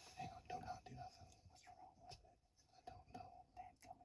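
Faint whispered speech in near silence, with a few soft clicks.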